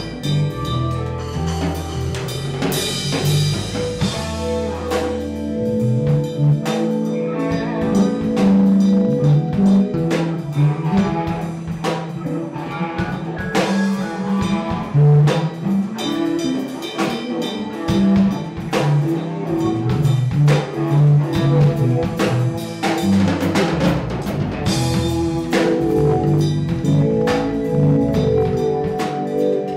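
A blues-rock band playing live: electric guitar, bass guitar, a Mapex drum kit keeping a steady beat, and keyboards, in an instrumental jam.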